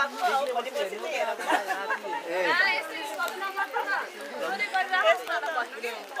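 Several people talking over one another at close range, a jumble of overlapping voices.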